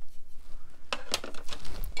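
A few brief clicks and knocks of a paintbrush and a metal watercolour palette tin being handled while paint is mixed with water, the sharpest about a second in and another just before the end.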